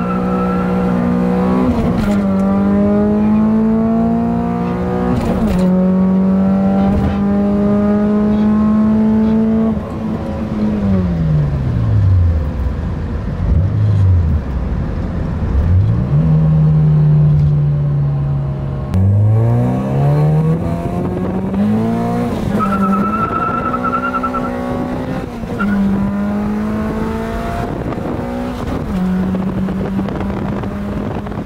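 Honda H23A 2.3-litre four-cylinder, heard from inside the cabin, pulling hard through the gears: the revs climb and drop back at each upshift, then hold high for a few seconds. About ten seconds in the revs fall away, with a few quick dips and climbs, then steady. From about 19 s it climbs through the gears again, with a brief high steady tone at about 23 s.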